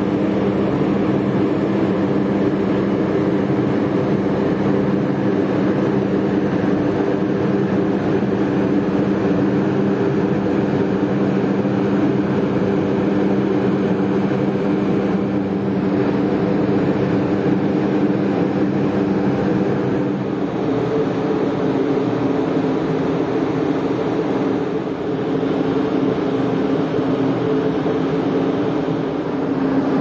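Steady drone of a tanker's engine and machinery heard on deck as the ship comes in to berth, a constant hum holding several low tones. The tones shift slightly about two-thirds of the way through.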